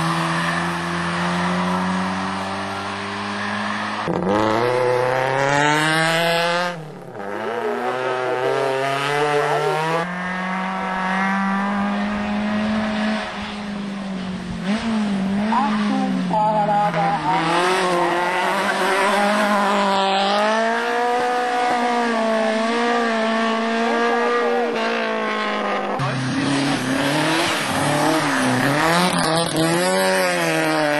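Racing touring car engine running hard at high revs, its pitch climbing through the gears, dropping at each shift or lift of the throttle, then climbing again.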